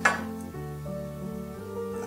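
Background music with sustained chords. At the very start, a single metal clink as a dinner fork is set down by a plate.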